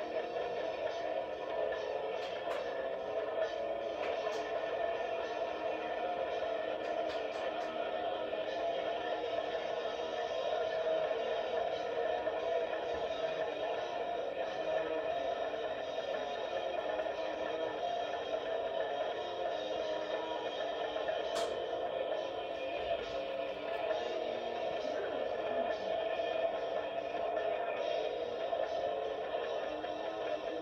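A band playing a fast song live, with guitar, drums and vocals running without a break. It is played back from an old video through a TV's speaker and re-recorded, so it sounds boxy and dull, with little top end.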